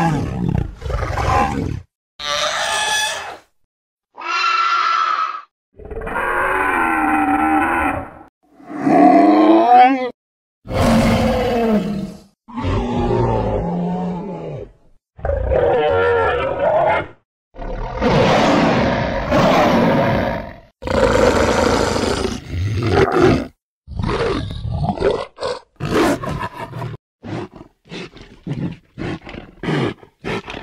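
A string of short cartoon creature roars, growls and screeches, mostly dinosaur roars, one after another with brief silent gaps. Each lasts a second or two, and near the end they become shorter and come faster.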